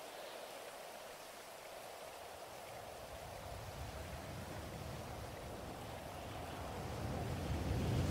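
Steady, quiet rain-like ambient noise, with a low rumble that swells over the last few seconds.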